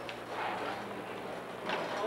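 Background noise on a building construction site under a steady low hum, with a few faint clicks and knocks.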